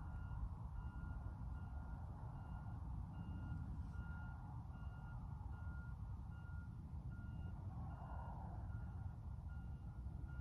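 A vehicle's reversing alarm beeping steadily, about one and a half beeps a second, over a low rumble; it stops just before the end.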